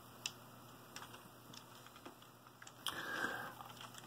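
A few faint clicks from a plastic LEGO-brick tank model handled and turned over in the hands, with a short rustle a little before the end.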